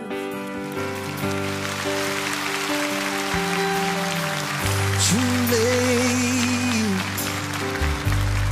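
Live band accompaniment to a slow pop ballad, holding steady chords, with audience applause underneath. A wavering sung note is held for about two seconds past the middle.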